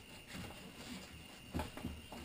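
Quiet handling noise of a flak vest: the fabric shuffling with a few soft knocks as the plates shift inside, a little louder about one and a half seconds in.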